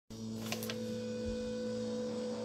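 Steady electrical mains hum, with a couple of faint clicks about half a second in.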